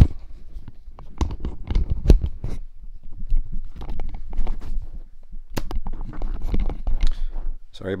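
Handling noise from a handheld camera being turned around and adjusted: an irregular string of knocks, rubbing and scraping on the microphone over a low rumble.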